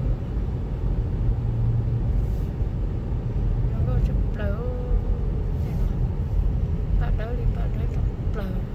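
Steady low road and engine rumble of a car driving, heard from inside the cabin.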